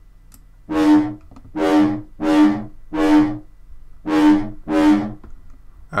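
Xfer Serum software synth playing an FM lead patch, a sine oscillator with FM alongside a Monster 3 wavetable, through a band filter. It plays six short, bright notes on one pitch, each fading quickly: four in a row, a short pause, then two more.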